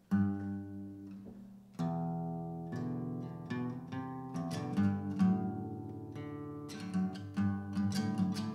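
Ashton six-string acoustic guitar strummed: one chord struck at the start and left to ring, a new chord a little under two seconds in, then a steady pattern of strummed chords.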